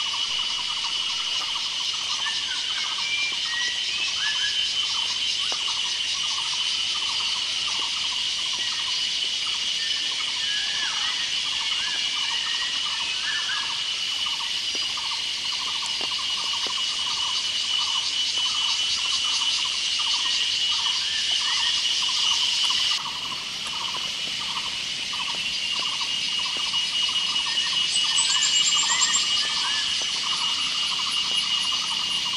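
Evening insect chorus: a steady high shrilling, with a string of short repeated calls below it at about two a second. The sound shifts abruptly about two-thirds of the way through.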